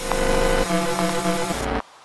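Short, loud outro sting: a dense wash of sound with held tones that change pitch in two steps, cutting off suddenly near the end.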